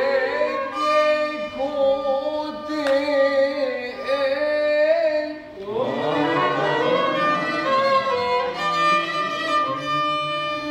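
Two violins playing a melodic Middle Eastern line in maqam Nahawand, with a short break about halfway and then a new phrase that slides upward.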